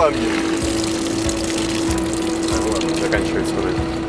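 Steady hiss of water running from a garden hose nozzle, with a steady hum underneath.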